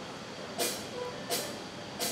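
Steady hum of a club stage and PA while a band waits to start playing, with two short, hissy, cymbal-like taps: one a little over half a second in and one about a second later.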